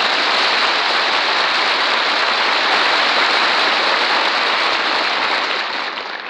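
Studio audience applauding and laughing after a song, a steady even clatter of clapping that eases off slightly near the end.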